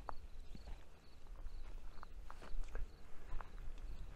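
Footsteps on stony, gravelly ground: irregular crunches and knocks, with a low wind rumble on the microphone.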